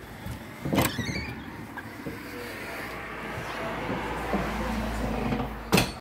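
A glass-paned wooden shop door being opened: a sharp clack about a second in with a brief squeak after it, then low rumbling handling noise, and another sharp knock just before the end.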